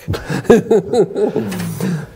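Loud male laughter in short voiced bursts, breaking out at the punchline of a joke.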